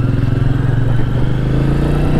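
Royal Enfield Meteor 350's single-cylinder engine and single exhaust running under way at a steady, low, even pulse, its pitch rising slightly near the end.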